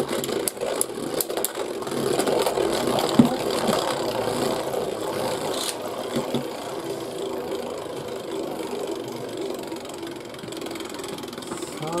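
Two Beyblade Burst spinning tops, Z Achilles and Winning Valkyrie, whirring steadily as they spin in a plastic stadium. They clack sharply as they clash several times in the first second or so, with a louder hit about three seconds in.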